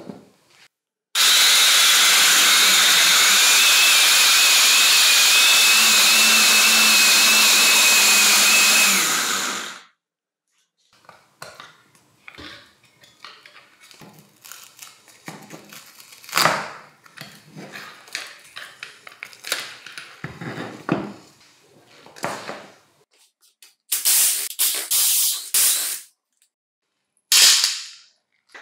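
Ryobi S-550 corded electric sheet sander running on mains power: a loud, steady motor and pad whirr with a faint high tone, starting about a second in and stopping after about eight seconds. After it stops come scattered handling clicks, scrapes and rustles.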